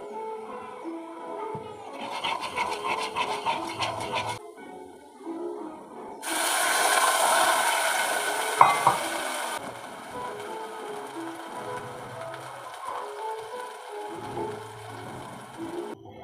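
Water poured into a hot clay pot of melted jaggery, hissing loudly for about three seconds starting about six seconds in, with one sharp tap near its end. Earlier there is a shorter rough sizzle, and background music plays throughout.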